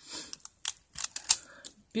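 A stack of emery nail files being handled: a run of sharp, irregular clicks and taps as the files knock together and long fingernails strike them, the loudest a little past the middle.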